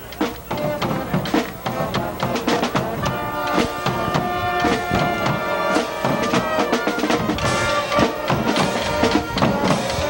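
Band music with drums and brass: a steady beat of drum strikes, with held horn notes joining about three seconds in.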